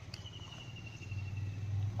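Faint outdoor background: a thin, high, slightly pulsing trill lasting about a second and a half and fading slightly downward, over a low steady hum.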